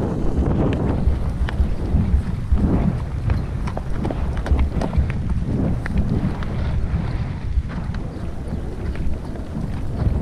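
Wind rumbling on the camera microphone of a rider on a horse moving at pace over grass, with the horse's hoofbeats and scattered light clicks over it.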